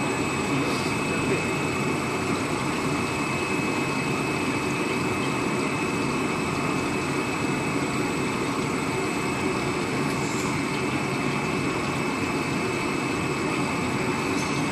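PE tube laminating (covering) machine line running steadily, with water spraying in its cooling trough: an even hiss with two constant high-pitched whines.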